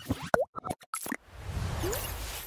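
Title-animation sound effects: a quick string of sharp clicks with a short rising pop among them, then a swelling whoosh that builds from a little over halfway through.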